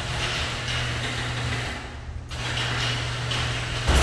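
Electric garage door opener running, its motor driving the sectional door along its tracks, with a brief dip about two seconds in before it runs on. The opener works.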